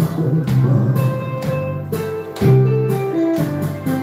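Instrumental music from a karaoke backing track, a passage between sung lines with no voice over it.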